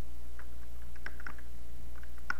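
A few light, irregular computer keyboard key presses, the keys stepping through a list one item at a time. They sound over a steady low electrical hum.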